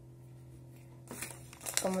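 A short rustle of paper being handled, starting about a second in, over a faint steady low hum.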